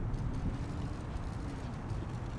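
Low, steady outdoor rumble with no words over it.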